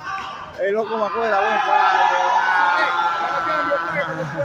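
Spectators' voices shouting over one another, getting loud about a second in and staying loud until near the end.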